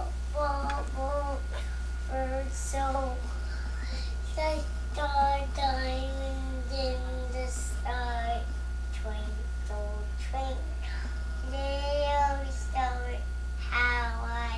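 A young child singing a song on her own, in short phrases with some long held notes and brief pauses between them.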